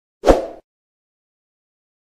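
A single short pop sound effect from a subscribe-button animation, about a third of a second in, starting sharply and fading within half a second.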